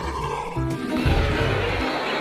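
Roar sound effect of an animated T-Rex, over background music; the roar grows louder about a second in.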